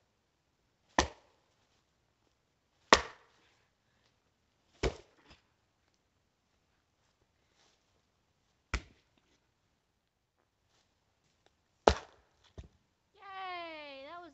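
Axe chopping into a stubborn buried root: six sharp blows, about two seconds apart at first, then a longer pause and two blows close together near the end. Just before the end a drawn-out voice slides down in pitch.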